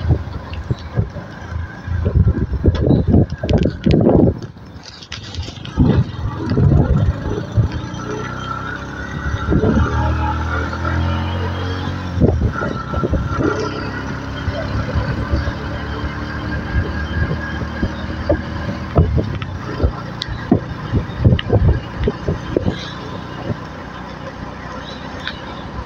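A vehicle's engine running as it drives along, with irregular knocks and thumps over the road. Its pitch rises and falls for a few seconds in the middle.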